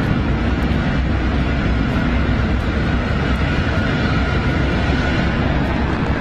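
Antares rocket's first-stage engines firing during ascent, heard as a steady, loud, dense rumble strongest in the low end, with the first stage performing nominally.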